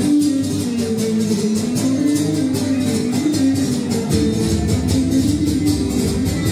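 Live Cretan string music playing a malevizioti dance tune: a melody line over quick, evenly strummed laouto accompaniment keeping a fast, steady beat.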